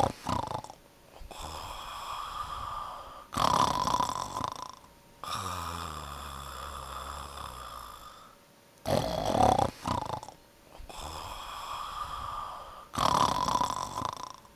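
Pomeranian snoring in its sleep: a louder snore roughly every four seconds, with quieter, longer breaths between.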